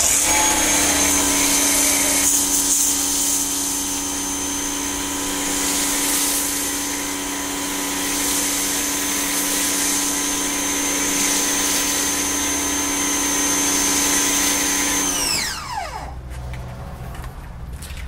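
Ryobi 1900 PSI electric pressure washer running with a steady motor whine and the hiss of a foam cannon spraying soap. About fifteen seconds in the spraying stops and the motor winds down, its whine falling in pitch and fading out.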